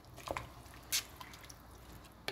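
Wooden spoon moving through chicken and broth in a stainless-steel pot: liquid dripping and splashing, with a couple of short sharp clicks about a third of a second and a second in.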